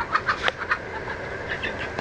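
Chickens clucking in a run of short, sharp calls, agitated at being chased by a dog.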